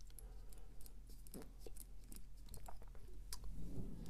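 Faint, scattered small clicks and rustles of thread being wrapped from a bobbin around a fly hook to tie down closed-cell foam.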